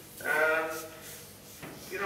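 A man's voice holding one drawn-out vowel for about a second, a hesitation before he speaks, heard through a laptop's speakers over a video call; his voice picks up again near the end.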